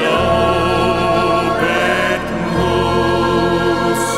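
A choir singing long, held chords over instrumental accompaniment, with a deep bass note that changes about two and a half seconds in.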